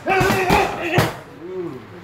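Strikes landing on leather Thai pads held by a trainer, with a sharp smack about half a second in and another about a second in.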